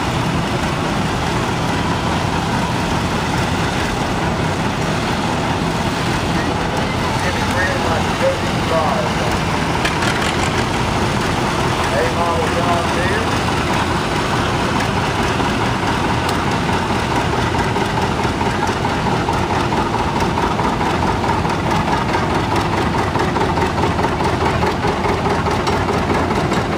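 Vintage farm tractor engines running slowly as the tractors drive past one after another, a steady low engine hum, with people's voices over it.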